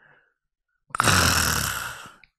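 A man's rough, voiced exhale close to a handheld microphone, with a low buzz under the breath noise. It starts suddenly about a second in and fades out over about a second.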